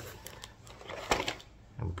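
Plastic cassette cases clicking against each other in a cardboard box, with a faint rustle of the box as they are handled; a few sharp clicks, the loudest about a second in.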